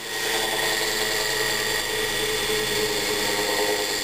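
Antique Electric Specialty Co. (ESCO) synchronous motor coasting down after being switched off, its heavy rotor still spinning steadily. The old ball bearings run rough, a sign that they are worn and need replacing.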